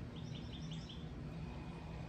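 A small bird chirping outdoors: a quick series of about five short, high chirps in the first second, over a steady low background hum.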